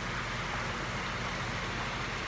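Steady background hiss with a low, unchanging hum underneath, like machinery or water running at the ponds.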